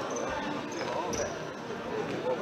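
Futsal ball being kicked and bouncing on a sports-hall floor, with short knocks and brief high squeaks among echoing shouts and chatter from players and spectators.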